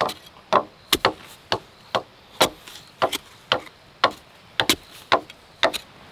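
A long-handled digging tool striking down into packed soil to dig a post hole, with sharp strikes about two a second.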